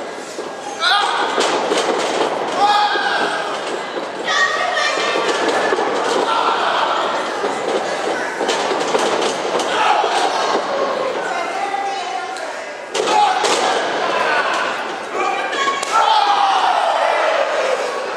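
Wrestlers' bodies slamming and thudding onto the ring canvas, several sharp impacts scattered through, over shouting voices from the crowd in a large hall.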